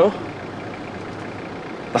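Steady, even hiss of background noise inside a car's cabin, with no distinct events, between a spoken 'No' at the start and the next words at the end.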